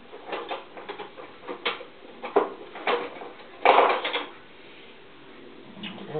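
Kitchen drawer pulled open and cutlery rattling as a knife is taken out: a string of small knocks and clicks, with one loud clatter a little past halfway.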